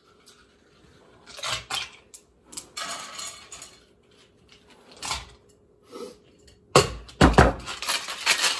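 Ice clattering into a metal cocktail shaker tin in scattered handfuls, then a few loud knocks near the end as the cocktail shake gets going.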